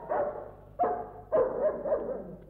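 Cartoon dog barking: three barks in quick succession.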